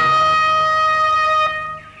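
Film background score: a trumpet holding one long note, which fades away about a second and a half in.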